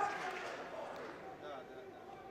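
Faint background murmur of distant voices, fading away.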